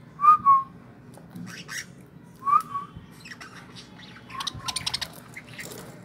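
Budgies calling: two short squawks right at the start, another about two and a half seconds in, then a burst of quick chatter in the second half, among light clicks of beaks picking at food in the dish.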